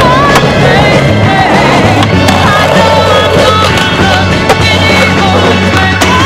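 Skateboard tricks on metal rails, the board grinding and clacking, mixed with a loud music track that has a steady bass line. A sharp clack about four and a half seconds in is the loudest moment.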